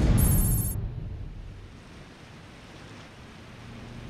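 Cinematic sound of open-ocean waves at night: a deep surge swells to its loudest in the first half-second, then fades to a low, steady rumble of sea. A brief, high electronic chatter comes over it in the first second.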